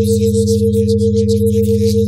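Layered synthesized sine tones from a subliminal audio track: a rapidly pulsing mid tone over steady lower hums, with a flickering high hiss above them, all running unchanged.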